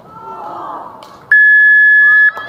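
Electronic game-clock buzzer sounding one loud, steady high tone for about a second, starting abruptly just past halfway: typical of the end-of-match signal. Children's voices and shouts come just before it.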